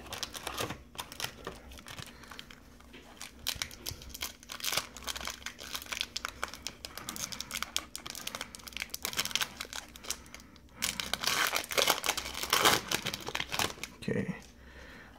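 Foil wrapper of a 2015 Bowman Chrome baseball card pack being torn open and crinkled by hand: a continuous crackling, loudest about three seconds before the end.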